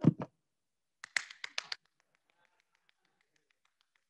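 Hands clapping: a quick run of about six sharp claps about a second in, then fainter, rapid claps that keep going until near the end.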